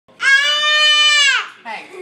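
A baby's long, high-pitched squeal held steady for about a second, dropping away at the end, followed by a short falling vocal sound.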